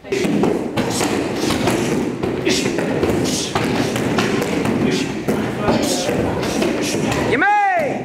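Karate kicks landing in quick succession on hand-held mitts and kick shields, a run of dull thuds, with voices and shouts from the class around them. Near the end a short cry rises and falls in pitch.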